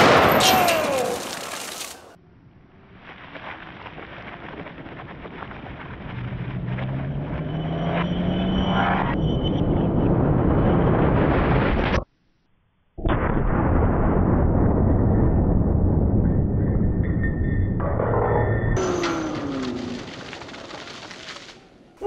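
A single shot from a .500 Nitro Express double rifle right at the start, ringing out for about two seconds. It is followed by long stretches of low, muffled, drawn-out sound, broken by a complete dropout of about a second near the middle.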